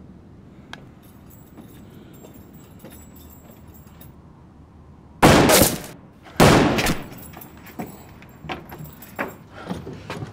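Two loud bangs a little over a second apart, each dying away quickly, followed by a run of lighter knocks and clatter.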